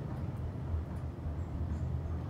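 Steady low rumble of a thyssenkrupp high-speed traction elevator cab travelling down at about 1,000 feet per minute, heard from inside the cab.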